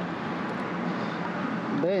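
Road traffic passing on the bridge: a steady rushing hiss of tyres and engines.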